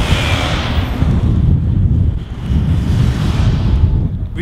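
A car driving past close by, its tyre and engine noise loudest at the start and fading over about three seconds, while heavy wind buffets the microphone throughout.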